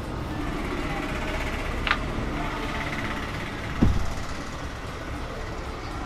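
Steady background hubbub of a busy roadside shop by the street, with a short click about two seconds in and a low thump just before four seconds.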